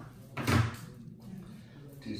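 A single short thump about half a second in, with faint voices after it.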